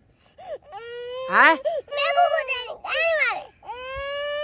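A toddler girl crying in a run of long, high wails that rise and fall, about five of them with short breaks between. She is crying because another child hit her while they were playing.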